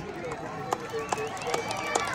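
Crowd in the stands chatting: a low murmur of scattered voices, with a few light knocks.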